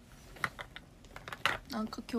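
Several short, light taps or clicks, irregularly spaced, in the first second and a half. Then a young woman's voice starts speaking near the end.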